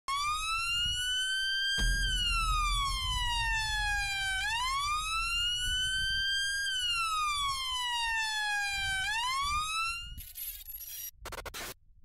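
A wailing siren, its pitch sweeping slowly up and down, each rise or fall lasting a couple of seconds, over a low rumble. It cuts off about ten seconds in, followed by a few brief crackly noise bursts.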